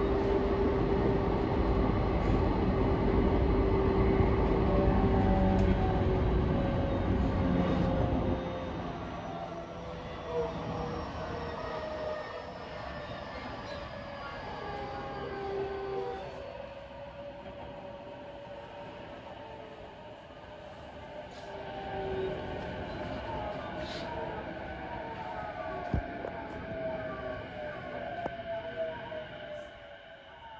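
Interior running noise of a JR East E233-5000 series electric train: wheel and rail noise with steady motor tones. About eight seconds in the noise drops, and the inverter and traction-motor tones fall steadily in pitch as the train brakes for its station stop, with a single sharp click near the end.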